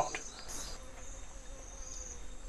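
Insects chirring in the bush: a high, shrill buzz that swells about half a second in and again near the end, over a faint low hum.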